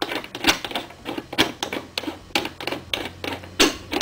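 Steel reloading trim die being screwed down into the threaded top of a cast-iron reloading press: irregular metallic clicks and taps, about three a second, as the die and its lock ring are turned by hand.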